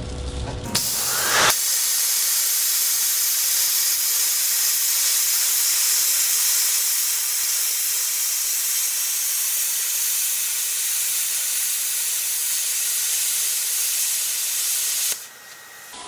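Plasma arc of a Thermal Dynamics Cutmaster 60i X gouging out a weld: a steady, high-pitched hiss that starts a little under a second in with a brief louder burst as the arc strikes. It cuts off suddenly about a second before the end, leaving a quieter hiss.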